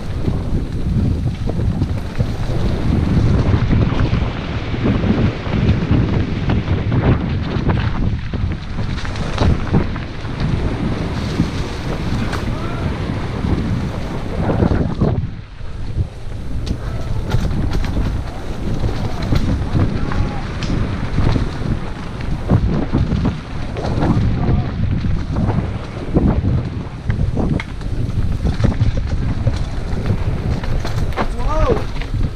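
Wind buffeting the microphone of a camera riding on a mountain bike descending a rough dirt singletrack, with frequent rattles and knocks from the bike over roots and stones. The wind eases briefly about halfway through.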